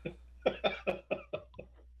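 A man laughing: a run of about six short breathy bursts, fading away.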